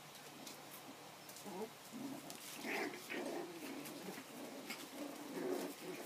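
Bichon puppies vocalizing as they play-fight, a string of short low calls starting about one and a half seconds in, with scattered soft clicks.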